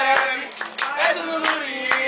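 A group of people clapping a rhythm by hand while singing in a swingueira (pagode baiano) style.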